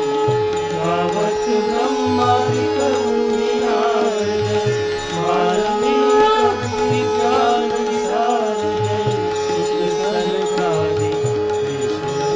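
Hindu aarti hymn sung to music, the melody moving over a steady held drone note.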